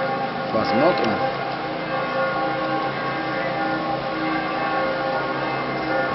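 Church bells ringing, many overlapping tones held steadily, with a brief voice sound about a second in.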